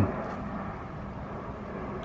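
Steady, even background noise with no distinct events, of the kind distant traffic makes.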